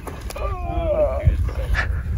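Wind rumbling on the microphone, with a short wavering, whine-like voice sound about half a second in and a couple of sharp knocks.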